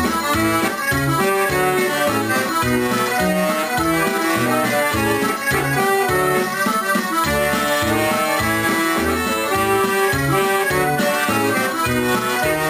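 Elkavox chromatic button accordion playing a lively corridinho, a fast Algarvian folk dance tune: a quick running melody over a steady pulsing bass beat.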